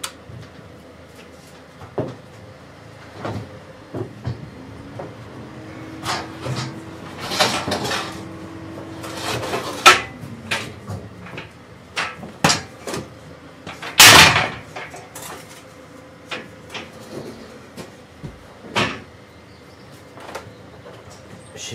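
Scattered knocks, clunks and rattles of handling inside an empty sheet-metal van cargo area, with louder bangs about ten and fourteen seconds in.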